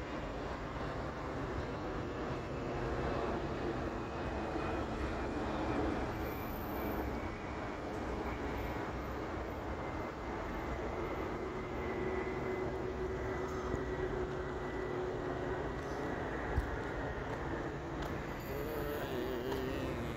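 Steady outdoor city background noise with a distant vehicle engine hum, a faint tone in it sliding slowly down in pitch through the middle. A single small click about sixteen and a half seconds in.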